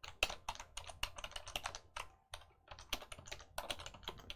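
Typing on a computer keyboard: an irregular run of keystroke clicks, several a second.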